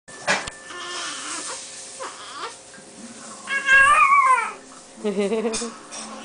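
Newborn babies' small high-pitched cries and squeaks, with one louder squeal about three and a half seconds in that wavers and then drops in pitch.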